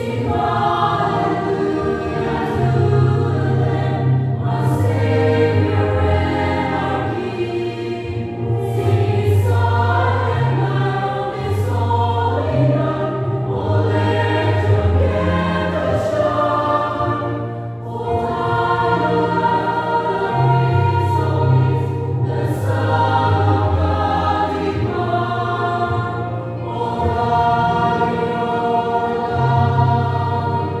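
Mixed choir of women's and men's voices singing a Christmas song in parts, phrase after phrase, over steady held low notes.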